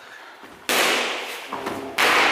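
Kickboxing strikes smacking into leather focus mitts, echoing in the gym hall: a loud smack about two-thirds of a second in, a lighter one about a second later, and a loud kick landing on the mitt at the very end.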